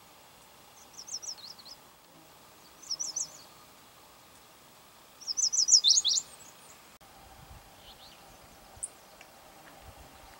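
Chestnut-sided warbler singing: three short phrases of rapid, high notes, the third and loudest ending in an emphatic downslurred note. After a cut partway through, only a few faint bird chips are heard.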